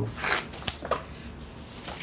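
Paper rustling with a few sharp clicks, as of book pages or sheets being turned and handled.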